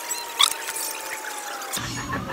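An edited-in sound effect or music clip: a faint thin tone slowly sliding down in pitch, with a short click about half a second in.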